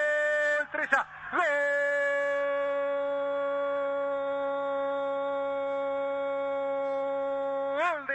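A radio football commentator's long drawn-out "gol" cry, announcing a goal. A held note is cut off less than a second in, then after a quick breath he sustains a second "gooool" on one steady pitch for about six seconds.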